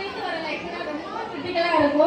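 Speech: a woman talking into a microphone, heard through the loudspeaker, with chatter from a large audience underneath.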